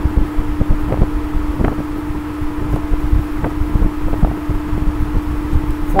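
Steady background hum: one constant tone over a low rumble, with occasional faint ticks.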